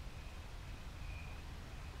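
Quiet background noise of the talk's recording: a steady low rumble and faint hiss, with a faint thin high tone heard twice.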